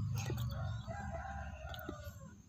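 A rooster crowing faintly, one drawn-out call.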